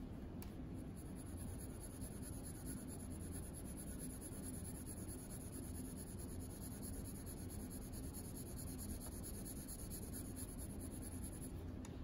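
Faint, steady scratching of a 2B graphite pencil shading back and forth on paper.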